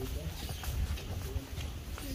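Footsteps of several people walking on a hard indoor floor, short clicks over a low rumble from the moving handheld phone, with faint voices.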